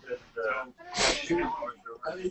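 Indistinct voices coming through a video call, with a sudden short breathy burst about a second in.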